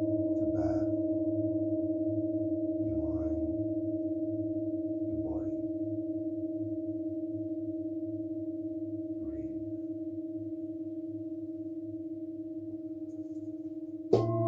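Large metal singing bowl ringing on with a steady low tone and a fainter higher overtone, slowly fading throughout. A fresh bowl strike cuts in at the very end.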